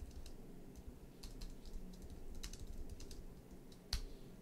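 Computer keyboard being typed on: irregular, fairly quiet key clicks, with one louder keystroke near the end.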